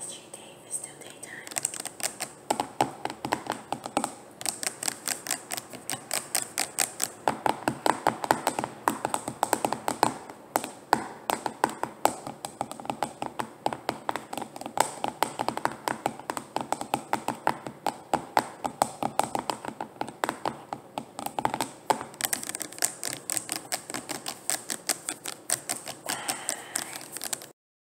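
Fingers and nails tapping rapidly on bottles and jars, a fast, steady run of light clicks, several a second, broken by a few brief pauses.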